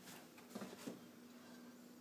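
Faint sizzle of butter melting in a hot cast-iron skillet, over a steady low hum, with two faint soft knocks about halfway through.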